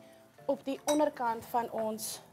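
A few light clinks of a metal spoon against a small ceramic bowl.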